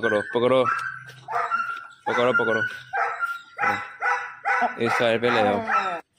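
A dog barking repeatedly, about eight short barks spread through the few seconds.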